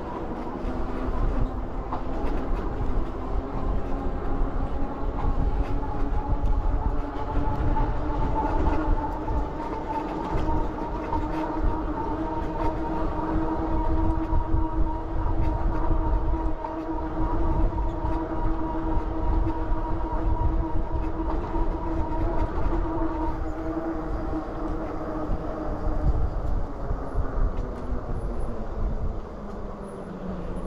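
Electric bike's drive motor whining steadily under power. The pitch rises slightly as the bike gathers speed and falls over the last several seconds as it slows down. Wind rumbles on the handlebar microphone.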